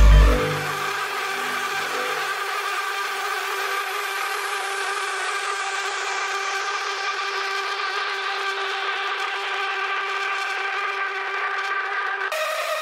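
Breakdown of a darksynth electronic beat: the bass and drums drop out about half a second in. What remains is a steady sustained synth chord, its brightness slowly filtered down over the passage.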